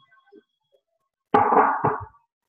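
A sudden loud knock or clatter near the end, with a second, shorter knock about half a second later, after a few faint ticks.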